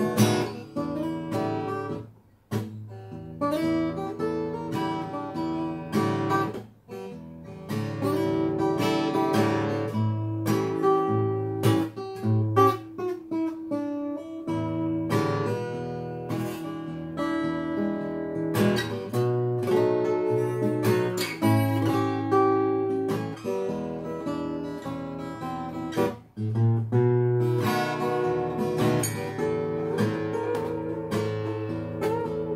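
Headway HF-25 steel-string acoustic guitar played fingerstyle, picked notes ringing out continuously, with a few brief breaks in the phrasing.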